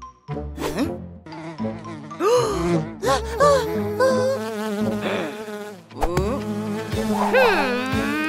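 Cartoon bee buzzing, its pitch swooping up and down again and again as it flies about.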